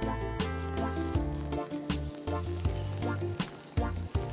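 Chopped onions sizzling as they fry in a little hot oil in a stainless frying pan, the sizzle setting in about half a second in and holding steady.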